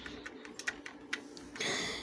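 A few light, scattered clicks of computer keys, about five over two seconds, followed near the end by a short breathy hiss.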